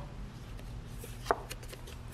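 Round cardboard oracle cards handled on a table: a faint rubbing with one small sharp click a little past halfway and a few softer ticks after it, over a low steady room hum.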